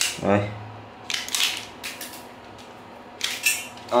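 Hand-held self-adjusting automatic wire stripper being worked: two short metallic clacks of its spring-loaded jaws and handles, about a second in and again near the end.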